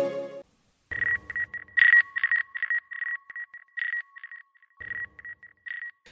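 The tail of the intro music stops about half a second in. After a short gap comes a run of irregular electronic beeps at a steady pitch, short and longer tones in quick succession, lasting until the end.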